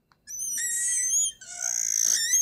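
Marker squeaking on a glass lightboard as a curve is drawn: two high-pitched squeaks, the first wavering, the second starting just past halfway.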